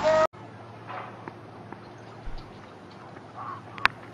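Faint open-air ground ambience, then near the end a single sharp click as the cricket ball takes the edge of the bat.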